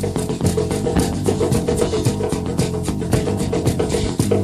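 Rock band playing an instrumental passage: electric guitar holding sustained notes over a drum kit keeping a steady, fast beat.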